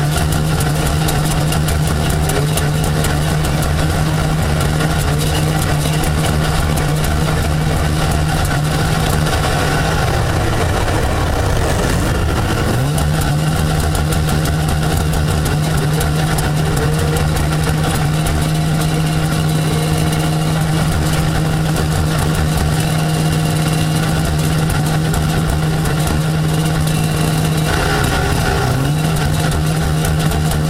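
Snowmobile engines idling together in a steady drone. The nearest engine's pitch dips and climbs back up about twelve seconds in, and again near the end.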